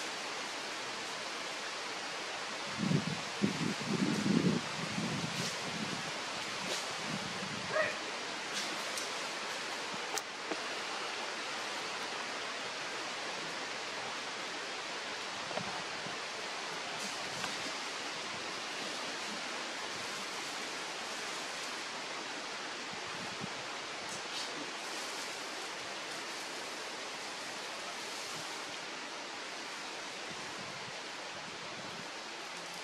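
A steady, even hiss of outdoor background noise. A few low rustling bumps come about three to five seconds in, and a handful of sharp clicks follow.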